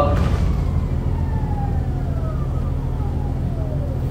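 Electric whine of an Orion VII NG hybrid bus's BAE HybriDrive drive motor, falling steadily in pitch as the bus slows, over a steady low drone from its Cummins ISB diesel, heard from inside the bus.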